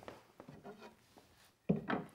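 Wooden strip being handled against the inside of a wooden chest: a few light wooden knocks and rubs, then a louder knock near the end.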